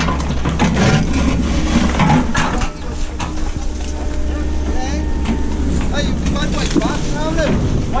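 Steady low rumble of a tracked excavator's diesel engine, with crackling and rustling of rubbish in the first three seconds. From about five seconds on come short, quick high-pitched calls.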